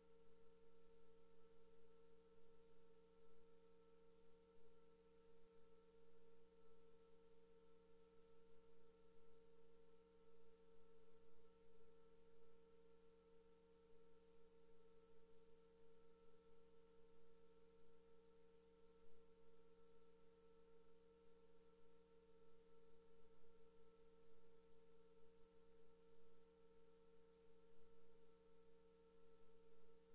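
Near silence: a faint, steady hum of a few constant tones over a low hiss, unchanging throughout.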